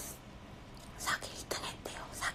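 A woman whispering a few short, breathy syllables, starting about a second in.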